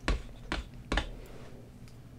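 Three short, sharp taps about half a second apart.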